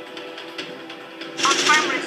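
Background music, then from about one and a half seconds in, rapid machine-gun sound effects with a voice shouting over them.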